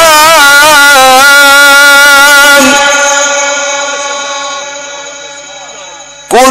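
A man reciting the Quran in the ornamented Egyptian mujawwad style, drawing the syllables out in melodic runs with a wavering vibrato. About two and a half seconds in he settles on one held note, which fades away slowly over the last three seconds.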